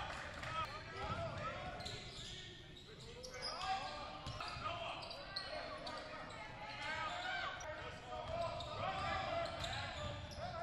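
Basketball game sounds on a hardwood gym court: a ball bouncing as it is dribbled, with indistinct voices of players and spectators calling out.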